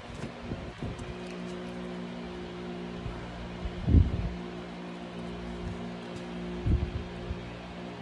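A sustained low drone of several held pitches, background music, with a dull thump about four seconds in and another near seven seconds as cards are handled and laid down on the table.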